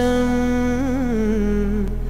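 Male voice singing one long held note of a Tamil devotional invocation verse, with a wavering ornament in the middle and the pitch stepping down near the end, over a steady low drone.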